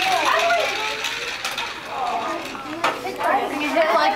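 Children's voices and chatter, with scattered exclamations, and one sharp click a little before three seconds in.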